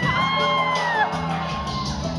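Electronic dance backing music with sustained low notes, and over it a long, high whoop that rises, holds for about a second and then glides down.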